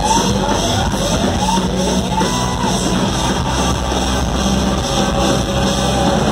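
Live rock band playing loud in a hall, with electric guitar. A run of short rising pitch sweeps repeats through the first couple of seconds over a sustained low bass note.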